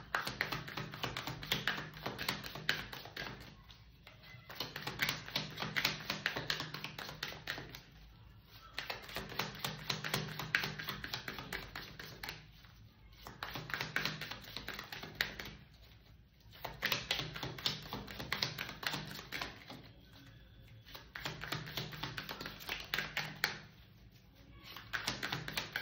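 A tarot deck being shuffled by hand: dense, rapid clicking of cards in about six bursts of a few seconds each, with short pauses between them.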